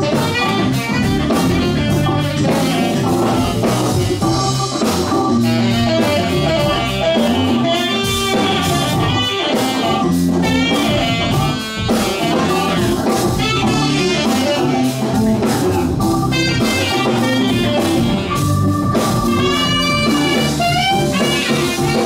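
Live blues band playing an instrumental passage with no vocals: drum kit, electric bass, keyboard and saxophone, with melodic lines bending above a steady beat.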